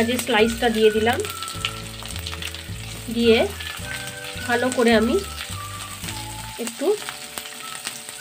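Sliced onions sizzling as they hit hot mustard oil in a non-stick kadai, then frying while a plastic spatula stirs them round the pan. A melodic pitched sound comes and goes over the sizzle, loudest near the start and again around the middle.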